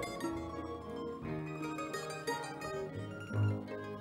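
A Baroque ensemble playing an instrumental passage without voice. Plucked strings such as theorbo and guitar lead, over double bass.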